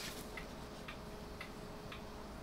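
Faint regular ticking, about two ticks a second, over a low steady hum.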